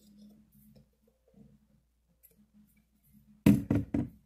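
Plastic Cetaphil lotion bottle being handled to get lotion out: three sharp knocks in quick succession near the end, after a few quiet seconds.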